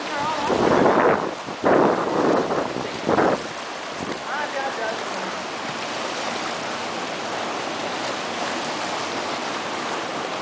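Sea water washing and churning into a rocky tidal swimming hole, a steady rushing hiss with three louder surges in the first three seconds or so.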